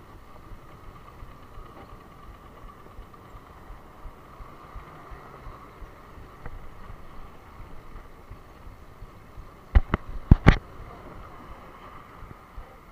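Steady rumble of wind and rolling road noise on a handlebar-mounted camera as a road bike rides along a street. About ten seconds in come four sharp knocks in quick succession within a second, much louder than the rest.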